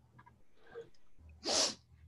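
A person's single short, sharp burst of breath, picked up by a video-call microphone, about one and a half seconds in.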